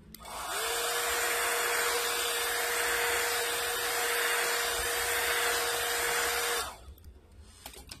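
Handheld hot-air blower (heat gun or hair dryer) switched on, its fan spinning up within about half a second to a steady rush of air with a hum, then switched off suddenly near the end. It is heating the phone's back glass to soften the adhesive.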